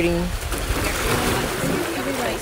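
Small waves washing up on a sandy shore, a steady rush of surf, with voices in the background.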